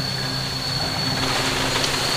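Steady background hum and noise with a constant high-pitched whine running under it.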